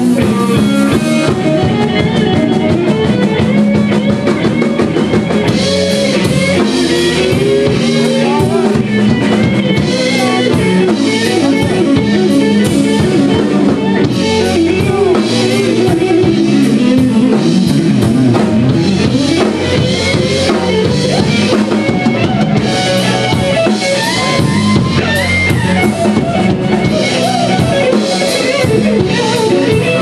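Live blues-rock power trio playing an instrumental passage: electric guitar over electric bass and a drum kit keeping a steady beat, the guitar's notes sometimes bending in pitch.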